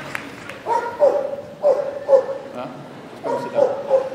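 A dog barking in short calls, about six of them in three pairs, over the hum of a large indoor arena.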